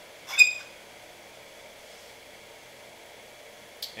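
A single sharp click with a brief high ringing about half a second in, as another 100-watt light bulb is turned on as load on the inverter, then a steady faint hiss and a smaller click near the end.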